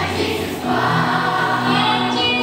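Children's choir singing: held notes, with a short break about half a second in before the next note starts.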